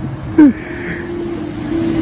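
A short, loud vocal exclamation about half a second in. Then a steady motor drone that slowly grows louder.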